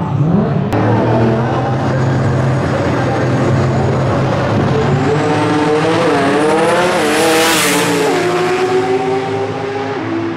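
Two Outlaw 10.5 drag racing cars, one a Ford Cortina, rumbling as they roll up to the start line. They rev with a wavering pitch at the line from about five seconds in, then launch loudly about seven and a half seconds in and run away down the strip.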